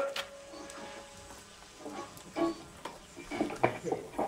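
Electric guitar played through a digital wireless instrument transmitter, a few quiet, sparse notes: one note rings and fades over the first second and a half, then scattered single plucked notes follow.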